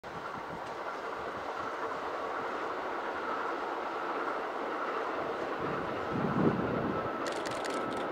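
Kintetsu 21000 series Urban Liner electric train passing at speed, a steady rumble of wheels on rail that swells slightly as it comes through. A brief low thump comes a little after six seconds, and a quick run of sharp clicks, wheels over rail joints, comes near the end.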